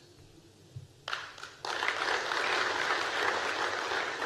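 Audience applauding: a few claps start about a second in, then the whole room joins in and the applause carries on steadily.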